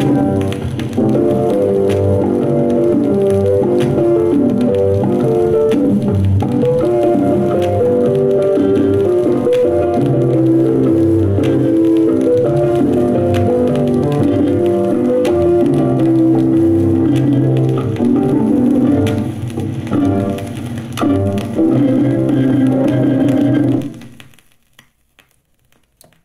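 Instrumental music with shifting melody and bass notes, played from a vinyl record on a turntable. About 24 seconds in the music ends, leaving only a few faint clicks of the stylus in the groove.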